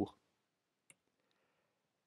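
A single faint click about a second in, amid near silence just after a spoken phrase ends.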